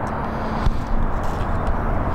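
Steady low outdoor background rumble with a faint steady hum.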